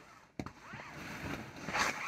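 A sharp click about half a second in, then a faint, uneven rustle and clatter of plastic ball-pit balls being stirred and picked up.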